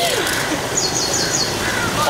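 A bird calling in about four quick, high notes about a second in, over steady crowd chatter.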